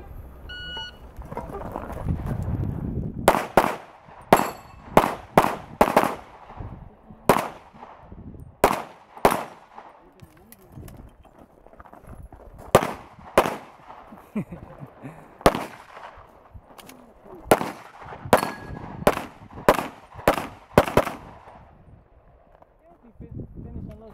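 Electronic shot-timer beep on the start signal, then a practical-shooting string of about twenty pistol shots, fired mostly in quick pairs with short gaps between bursts and a longer pause of about three seconds near the middle.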